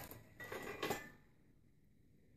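Faint scraping and a couple of light knocks from a long metal mounting bracket being lifted out of a plasma TV's metal chassis, lasting about a second.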